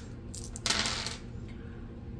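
Four small dice thrown onto a hard tabletop, clattering and rolling to a stop. A few light clicks come first, then a short dense clatter about two-thirds of a second in.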